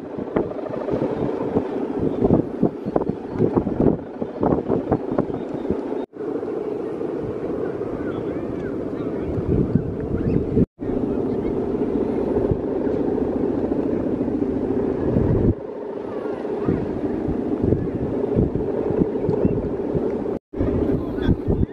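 Steady humming drone from the bow hummer (guangan) strung across the top of a large Balinese bebean kite flying overhead. Wind gusts buffet the microphone.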